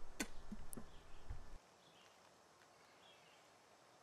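Faint outdoor background with a few soft clicks in the first second and a half, then near silence.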